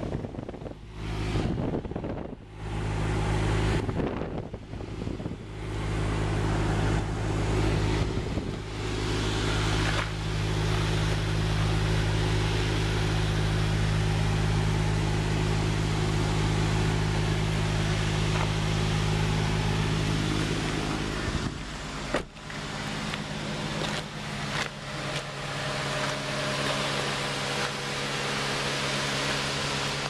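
2002 Acura MDX's V6 engine idling steadily, with some handling rustle in the first few seconds. A single sharp thump comes about two-thirds of the way through, and the idle is quieter after it.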